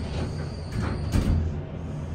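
Dover hydraulic elevator doors sliding shut after a floor call, ending in a thump about a second in, over a steady low hum.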